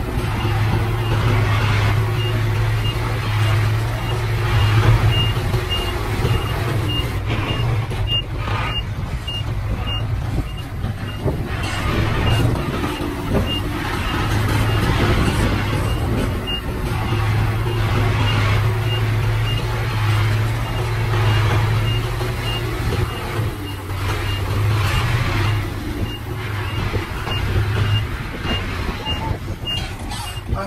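Dump truck's diesel engine running under load as the tipper bed unloads soil, with a high warning beeper sounding steadily about twice a second. The engine drone eases for a few seconds in the middle, then picks up again.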